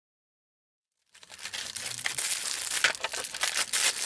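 Plastic packaging crinkling and rustling as a parcel is opened, starting about a second in after dead silence.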